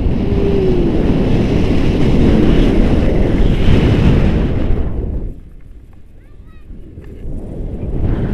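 Airflow buffeting the camera microphone in flight under a tandem paraglider, a loud rushing wind noise. It falls away sharply for about two seconds past the middle, then builds back.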